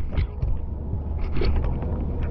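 Handling and wind rumble on a handheld GoPro Hero 10's built-in microphone: a steady low rumble with a few light knocks and clicks.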